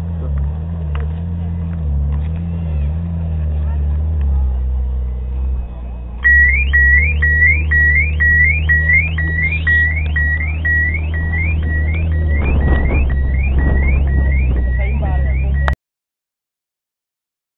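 Ferrari 458 Spyder's V8 idling with a steady low note. About six seconds in, a Lamborghini Countach 5000 QV's car alarm starts and becomes the loudest sound: a rising electronic chirp repeating about twice a second, set off by the 458's exhaust noise. The sound cuts off suddenly near the end.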